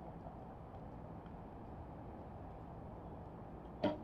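Low steady outdoor background noise, then, near the end, one short sharp snap from an Olympic recurve bow as the archer releases the string.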